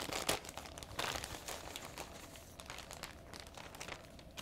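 A mailing envelope being opened by hand: crinkling and rustling, loudest in the first second, then quieter as the contents are slid out onto the table.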